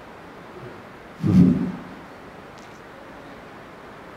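Quiet room tone, broken once about a second in by a single short, low vocal sound.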